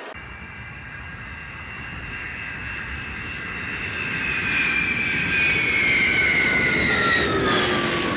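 Saab GlobalEye jet's twin Rolls-Royce BR710 turbofan engines as the aircraft approaches and passes close by: a high engine whine that grows steadily louder while its pitch drifts down, dropping further about seven seconds in.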